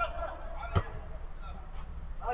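A short, honk-like shout from a player at the start, then a single sharp thud of the football about three quarters of a second in, over a low steady hum.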